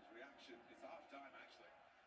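Near silence, with faint, indistinct speech in the background.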